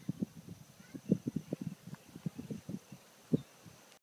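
Camera handling noise, soft irregular low thumps about two or three a second as the hand-held camera is turned, over a faint steady high-pitched insect drone.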